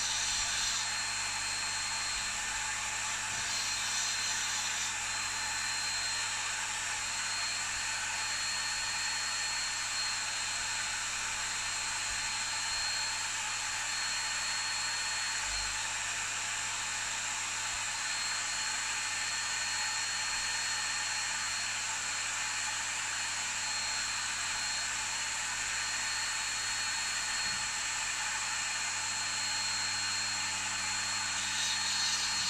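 Dremel rotary tool running steadily at high speed with a small abrasive wheel, a constant high whine, while a fountain pen nib's tip is held to the wheel at times to grind it into shape.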